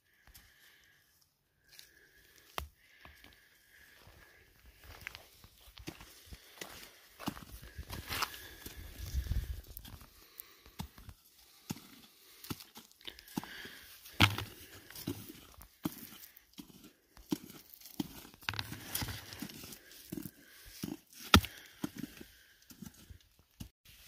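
Handling and movement noise of rock samples in work-gloved hands, with footsteps on gravelly ground: rustles and scrapes with scattered clicks and a few sharper knocks. A faint steady high tone comes and goes.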